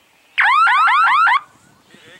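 Electronic signal horn of a glider speed course: a loud, one-second run of about seven quick rising chirps that starts and stops sharply.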